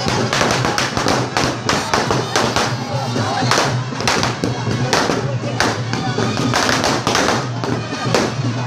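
A string of firecrackers going off in rapid, irregular bangs over music and crowd noise.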